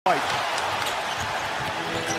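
A basketball dribbled on a hardwood court, its bounces faint against steady arena crowd noise.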